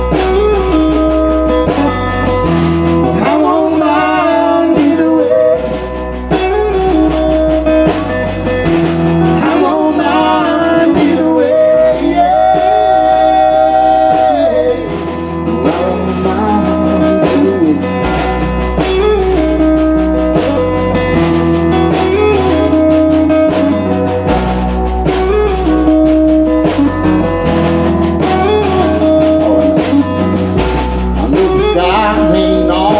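Live country band playing a song: acoustic and electric guitars, upright bass and drums, with a melody line over them that bends and holds one long note about halfway through.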